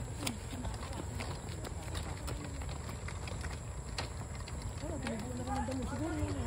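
Outdoor ambience: a low steady rumble with scattered light clicks, and faint voices of people talking, clearest near the end.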